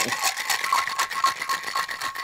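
Ice cubes rattling fast and continuously inside a stainless-steel cocktail shaker, shaken hard to chill and dilute a whiskey sour.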